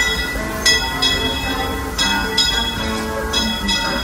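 Steam locomotive's bell clanging as the train pulls out, struck about five times at roughly one-second intervals, each strike ringing on, over the low rumble of the moving train.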